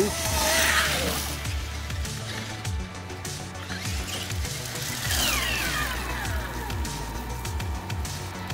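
Background music over the electric whine of a Traxxas X-Maxx 8S RC monster truck's brushless motor, which glides down in pitch about five seconds in as the truck slows.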